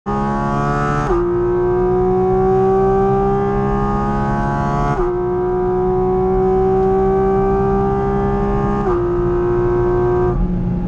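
Porsche 718 Cayman GT4 RS's naturally aspirated 4.0-litre flat-six, heard from inside the cabin, pulling hard down a straight: the pitch climbs slowly in each gear and drops sharply at three quick upshifts, about one, five and nine seconds in.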